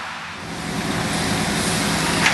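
Heavy machinery at a sawmill log yard running with a steady low hum under broad mechanical noise. It swells up over the first second, then holds steady.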